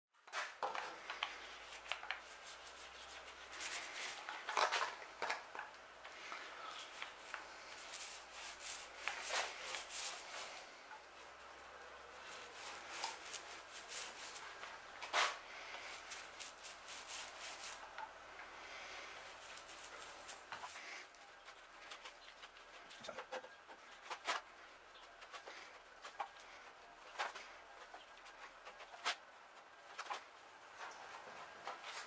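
Faint rubbing and scraping of an applicator spreading epoxy over scarfed wooden mast lengths, with scattered light clicks and taps of the tool and plastic pot against the timber.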